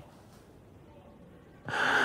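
Quiet room tone, then near the end a man's short, sharp intake of breath.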